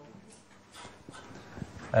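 A pause in a man's lecture speech: quiet room tone with a few faint, indistinct sounds. His voice comes back in just before the end.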